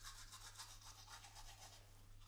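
Faint scrubbing of a toothbrush on teeth, repeated quick strokes over a low steady hum.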